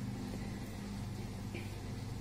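A steady low hum in the room.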